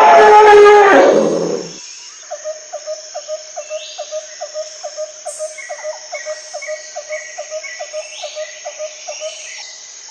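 An elephant trumpeting loudly, one call that drops in pitch and ends about two seconds in. After it, a steady rhythmic chirping, about three chirps a second, runs on over a faint high hum.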